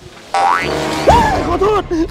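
Comic 'boing' sound effect added in editing: a quick rising glide about a third of a second in, with a short burst of music.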